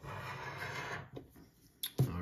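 A coin scraping the coating off a scratch-off lottery ticket: a steady scratching for about a second, then a short second stroke and a light tap near the end.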